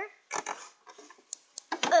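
Rustling and a few light clicks of a plastic toy doll house being handled, ending in a child's strained grunt, "ugh".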